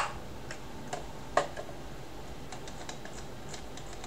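A few scattered clicks from a computer keyboard and mouse at a desk, the loudest about a second and a half in, followed by a run of fainter light ticks.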